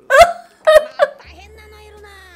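A man laughing hard in three loud, sharp bursts, followed by a quieter drawn-out, wailing voice.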